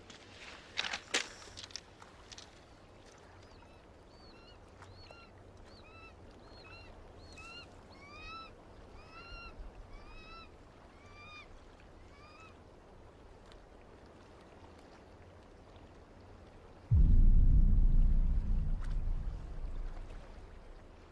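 A bird calling outdoors: a run of short, arched calls repeated about twice a second, after a few sharp clicks at the start. Near the end a sudden loud low rumble sets in and fades.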